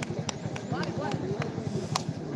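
Voices of people talking at a distance, with a few sharp clicks; the loudest click comes near the end.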